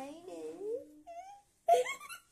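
A voice making drawn-out, wavering wailing sounds, then a short loud cry near the end.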